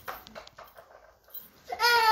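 A small child crying in a high, wavering voice, starting near the end after a few faint knocks. The child is upset and being coaxed.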